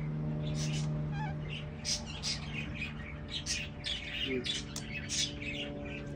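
Small birds chirping again and again in short high notes, one call gliding down in pitch about a second in, over a steady low hum.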